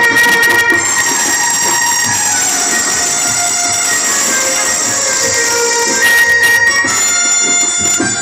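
Harmonium playing held, sustained notes and chords in an instrumental break of a live Haryanvi folk song (ragni), with faint drum strokes underneath.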